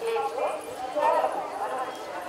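People talking: several voices speaking, with no other distinct sound standing out.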